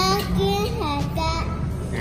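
A young child singing a short tune, holding a few high notes one after another, over a steady low room hum.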